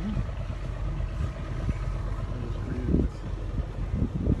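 Steady low drone of a traditional Kerala houseboat's engine running as the boat cruises.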